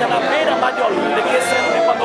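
A man talking close to the microphone in Portuguese over the chatter of a roomful of people, with music playing steadily in the background.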